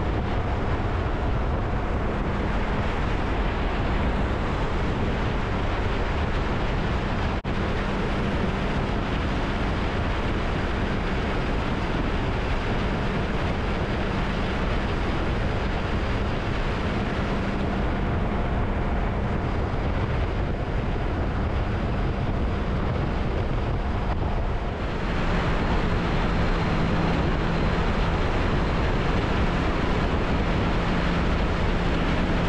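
Wind rushing over the microphone with the steady hum of a 2016 Honda Gold Wing F6B's flat-six engine cruising at highway speed. There is a brief break about seven seconds in, and the tone shifts near the end.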